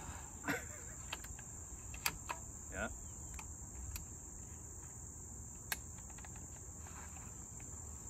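Steady high-pitched chorus of crickets in the grass, with a few sharp clicks a couple of seconds apart as the air rifle is handled and readied.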